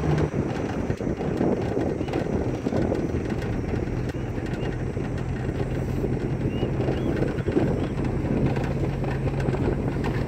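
Pickup truck driving on a dirt track, heard from its open load bed: a steady low engine hum under rough, rumbling road and wind noise.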